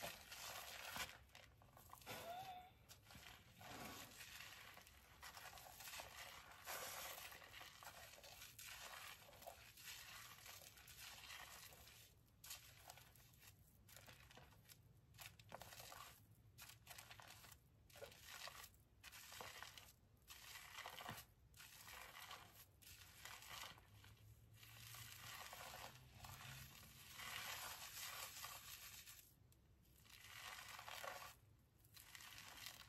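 Fingers scrubbing a thick shampoo lather through wet hair, a faint crinkly squishing of the foam that comes in uneven strokes with brief pauses.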